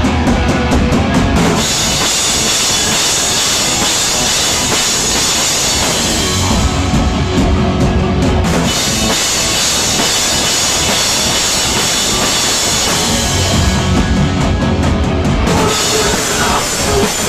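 A hardcore punk band playing live and loud: distorted electric guitars over a pounding drum kit. Three times, at the start, around the middle and near the end, the cymbals drop out for a heavier passage carried by low drums and guitars, between full-band stretches with crashing cymbals.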